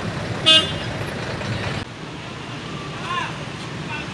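A single short vehicle horn toot about half a second in, over the steady low hum of an idling bus engine. The level drops suddenly about two seconds in, to quieter traffic noise with faint voices.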